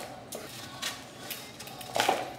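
A hard block of Parmesan being grated on a metal box grater: rasping strokes of cheese on the blades, about two a second.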